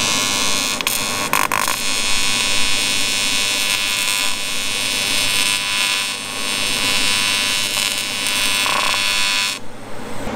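AC TIG welding arc on aluminum, from a Lincoln Square Wave TIG 200, buzzing steadily as a crack in the boat's hull is welded. The arc breaks off briefly twice in the first two seconds and stops suddenly near the end. A low steady hum runs underneath throughout.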